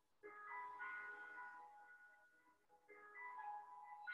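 Faint, slow background music of soft, ringing, bell-like notes, with one phrase starting just after the start and another about three seconds in, each note left to ring on.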